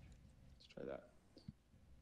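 Near silence in a small room, broken by a brief murmur of a man's voice a little under a second in and a single click about half a second later.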